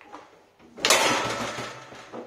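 A foosball shot slamming into the goal of a Fireball foosball table, with a loud crack about a second in and a rattle that dies away over about a second as the ball drops out of play.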